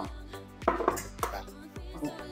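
Eggs being cracked and emptied into a stainless steel mixing bowl: several sharp taps of shell, over steady background music.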